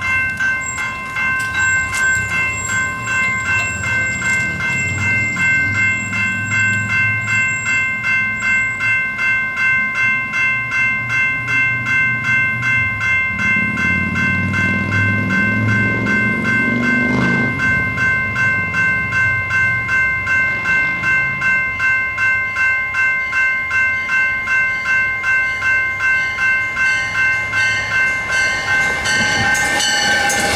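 Railroad crossing warning bell ringing steadily with an even, pulsing rhythm as a train approaches; a low rumble swells in the middle, and the train's noise builds near the end as the locomotive reaches the crossing.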